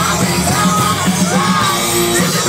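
Rock band playing live, with a female lead singer singing over electric guitar and drums. The sound is loud and steady.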